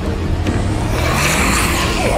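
Trailer sound-design build: a rising low rumble under a rushing swell of noise that grows louder toward the end.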